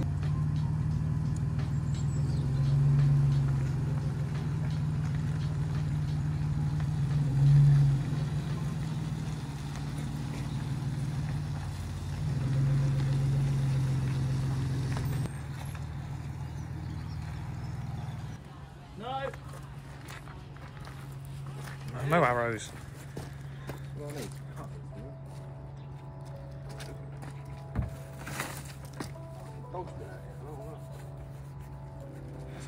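A 4x4 SUV's engine running under load as it tows a dead car on a strap, swelling a few times, then dropping to a quieter steady run about 18 seconds in.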